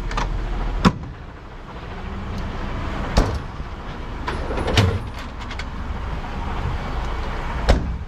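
Metal locker doors and a tool drawer on a heavy recovery truck's bodywork being opened and shut: several sharp clunks and clicks, the loudest near the end, over a steady low diesel engine running.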